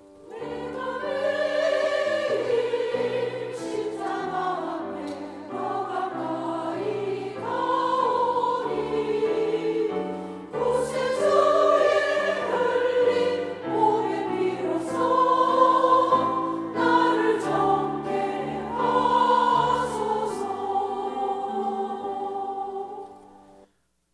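Women's church choir singing in several-part harmony, with long held chords and notes changing about once a second. The singing cuts off abruptly just before the end.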